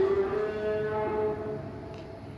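A man's voice holding a long, drawn-out sung vowel in a chanted recitation. It shifts pitch once about a second in and trails off toward the end.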